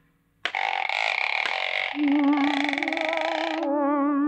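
Cartoon soundtrack: after a brief silence, sustained electronic tones with a strong, wavering vibrato start up, and a lower wavering tone joins about halfway through.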